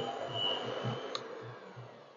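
Electric hand mixer running with a steady high whine as it beats butter and powdered sugar in a bowl, then stopping with a click about a second in.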